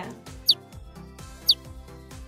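Two short, high chirp sound effects, each sweeping down in pitch, exactly one second apart over steady background music: a workout-timer countdown signal as the exercise interval ends.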